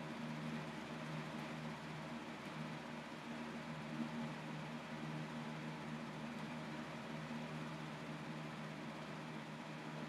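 Quiet, steady room hum and hiss, with one faint soft knock about four seconds in.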